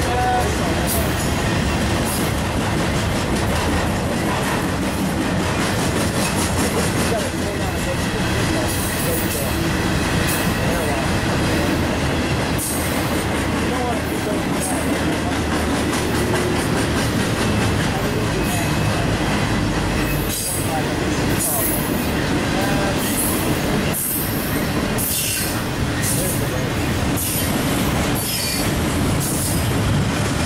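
Intermodal freight cars carrying semi-trailers and containers rolling past at close range: a steady rumble of steel wheels on rail, with repeated sharp clicks as the wheels cross rail joints, more of them in the second half.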